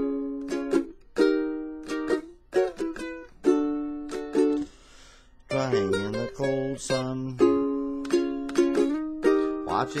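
Ukulele strummed in chords, each chord struck sharply and left ringing, with a short break about halfway. A man's voice comes in low for a moment after the break and again just before the end.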